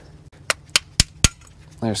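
Four sharp metallic clicks about a quarter second apart: a screwdriver knocking a rear brake pad out of its caliper bracket, the last two knocks the loudest.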